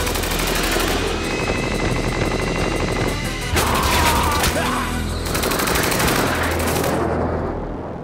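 Rapid machine-gun fire sound effect over action music, fading out near the end.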